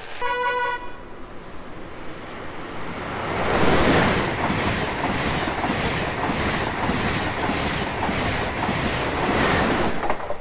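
A short train horn blast at the very start. Then an ICE high-speed train runs through the station: a rushing noise that swells over about three seconds to its loudest around four seconds in, followed by steady wheel clatter as the carriages go by.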